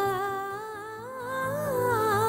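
Background score: a woman's voice humming a slow, drawn-out melody with a slight waver, over a low, pulsing beat. It grows a little quieter about a second in, then swells again.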